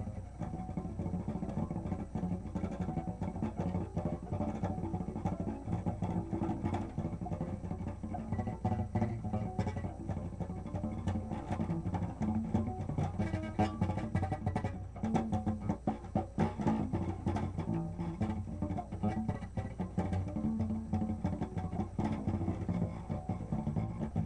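Acoustic guitar played by hand: a steady, unbroken run of plucked notes, mostly low in pitch.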